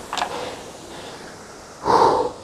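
A man gasping and breathing hard straight after an all-out rowing sprint: a short sharp breath just after the start, then a louder heavy breath near the end.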